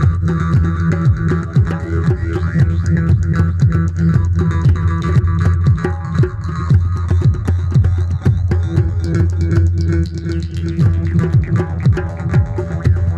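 Jaw harp playing a steady low drone with shifting, sweeping overtones, over quick, rhythmic djembe hand drumming.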